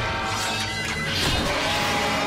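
Cartoon soundtrack: a music score with crashing, smashing sound effects over it, the crashes bunched about a second in.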